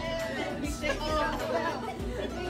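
Several people's voices chattering over background music.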